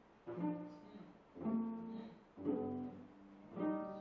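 A string ensemble of violins, violas and cellos plays four separate chords, about one a second, each starting sharply and dying away.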